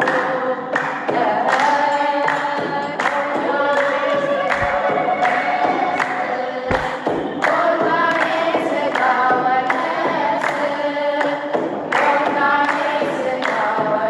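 A woman singing an Ethiopian Orthodox mezmur (hymn to the Virgin Mary) in Amharic into a microphone, with other voices singing along as a choir. Held, melismatic notes run over a steady beat of sharp strikes.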